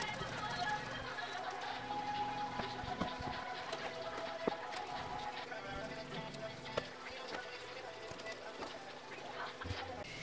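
Quiet background music with a few faint clicks.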